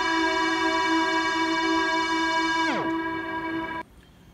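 Cassette tape synth, a Sony TCM-150 recorder whose tape speed is set by MIDI keys, playing a recorded FM string note through reverb and looper effects: one sustained note with its chord held steady. Near the end part of the sound slides steeply down in pitch, the sign of the tape slowing toward a stop, and then the whole sound cuts off suddenly.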